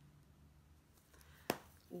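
Faint room tone broken by a single sharp click about a second and a half in.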